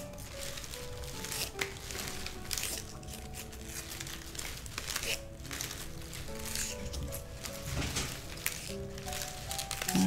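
Floral stem-wrap tape crinkling as it is pulled taut and wound round a bunch of flower stems while the bouquet is twisted, with rustling of stems and leaves. Soft background music with a melody plays underneath.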